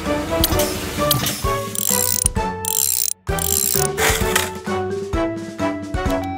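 Cartoon repair sound effects: a spanner tightening bolts with rapid ratcheting clicks, over light background music. It breaks off for a moment about three seconds in.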